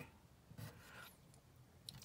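Faint scratching of a mechanical pencil writing on paper, with a soft click near the end.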